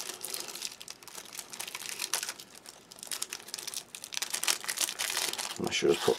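Clear plastic wrapper of a packet of ration cereal biscuits being torn open and handled, with irregular crinkling and crackling.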